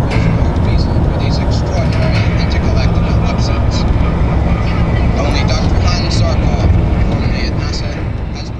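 Car cabin noise while driving at road speed: a steady low rumble of engine and tyres on the road, with indistinct voices over it, beginning to fade out at the end.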